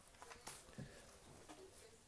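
Near silence: quiet room tone with a few faint, brief handling noises, about half a second in and again just under a second in.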